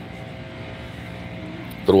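Steady low mechanical drone with a faint hum running under it; a man's voice comes in at the very end.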